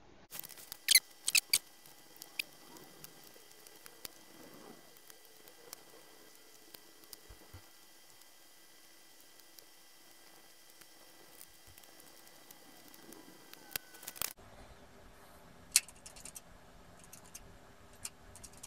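Front-panel push buttons of an Advantest R6142 programmable DC voltage/current generator being pressed: a few scattered faint clicks, a cluster in the first couple of seconds and a few more late on, over a quiet room with a faint steady tone.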